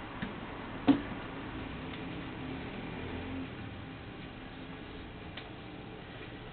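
Faint handling of a knitted hat on its needles: a few irregular light clicks, one sharper about a second in, over a low steady hum.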